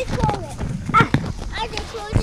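Children's voices without clear words, with a couple of sharp knocks about a second in.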